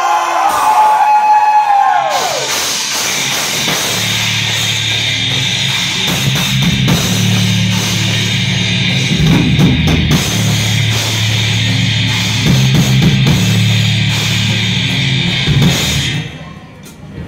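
Live rock band playing loud, driving circus-punk rock: electric guitar, drums, bass and keyboard. It opens with a held, bending note, the full band comes in about two seconds in with the bass joining heavily a couple of seconds later, and it stops suddenly near the end.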